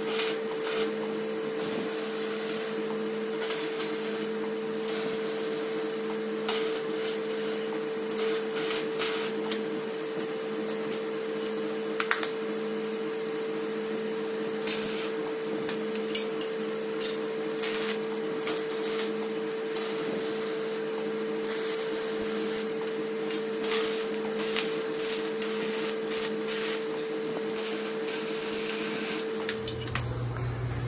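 MIG welder tack-welding steel plates onto a bracket: irregular crackle and clicks over a steady hum.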